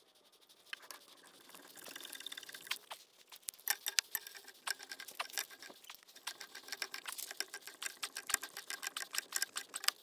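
Black iron gas pipe being screwed into its fitting by hand and then with a pipe wrench: a fast, uneven run of light metallic clicks and scrapes from the threads and the wrench's jaws on the pipe, growing busier about two seconds in.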